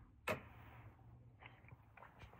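A single short, sharp click a moment in: the locking catch of the power cable's plug snapping into place at the Delta Pro Ultra's port, pushed with a screwdriver tip. Faint small ticks of handling follow.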